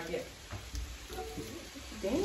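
Faint background voices and low room noise during a lull between louder talk, with a couple of soft low thumps.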